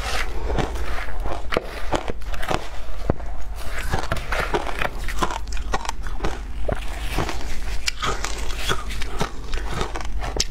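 Close-miked crunching of shaved ice being bitten and chewed, a rapid, irregular run of crisp crackles, with a metal spoon scraping and clinking in a plastic jar.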